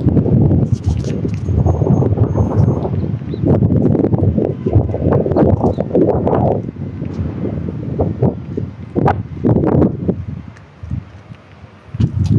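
Strong wind buffeting a phone's microphone: a loud, gusting rumble that eases near the end.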